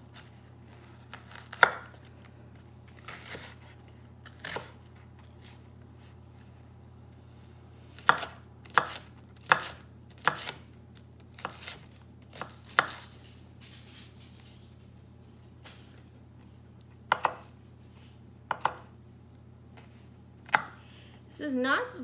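Chef's knife chopping an onion on a wooden cutting board: single sharp knife strikes on the board, irregular, coming in small groups with pauses of a few seconds between them. A faint steady low hum sits underneath.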